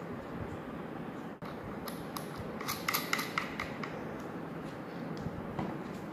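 Handling noise from a homemade motor's plastic end plate and frame being fitted together: a run of small, sharp clicks and taps about two to three and a half seconds in, a few more near the end, over a steady low hiss.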